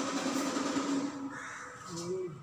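Whiteboard duster rubbing across a whiteboard in a steady, harsh scrape that fades about a second in.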